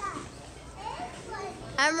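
Faint children's voices and background chatter, then a woman begins speaking near the end.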